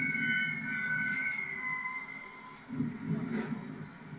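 Steam locomotive working hard as it approaches, its exhaust a low, uneven rumble that swells near the end. A thin, steady high tone sits over it for the first half.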